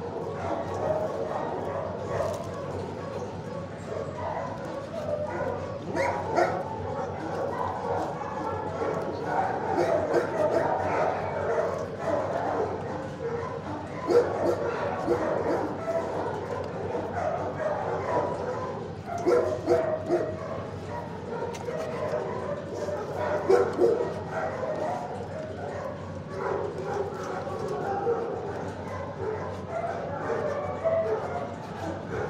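Many dogs barking and yipping together in a shelter kennel block, a continuous overlapping din with frequent sharp barks.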